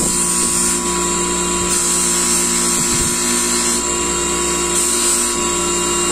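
An electric motor with a polishing wheel on its shaft runs at steady speed, giving a steady hum with a high whine. There is a brief low knock about halfway through.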